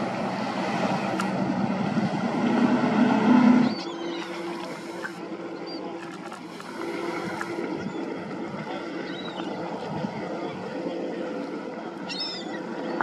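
Outboard motorboats running past at speed: engine drone over hull and wake noise. It is loudest for the first few seconds, then drops suddenly to a quieter, steadier engine tone. Gulls call faintly a few times.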